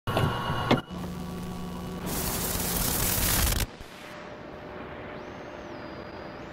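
Sounds of a videocassette recorder starting playback: a short mechanical whir and clunk, a steady hum, then a loud burst of static about two seconds in that drops to a lower, steady tape hiss.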